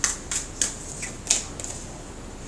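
A tarot deck being shuffled by hand, giving about five sharp, uneven card snaps.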